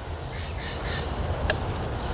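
Faint crow cawing a few times over a steady low rumble, with one small click about one and a half seconds in.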